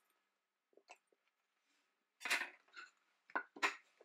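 Faint kitchen handling sounds: a few short knocks and clinks from a knife and chunks of peeled pear on a wooden cutting board and a ceramic bowl being handled, mostly in the second half.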